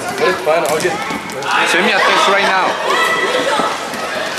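Voices of players and spectators calling out in a gym hall during an indoor youth soccer game, with a few sharp knocks of the ball on the hard floor.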